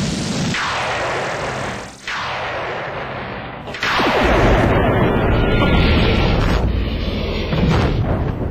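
Sci-fi TV space-battle sound effects: three sweeping whooshes falling in pitch, about a second and a half apart, then from about four seconds in a heavy low rumble of booming explosions and weapons fire.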